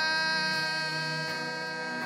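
A man singing a solo, holding one long note over instrumental accompaniment; the note falls away right at the end.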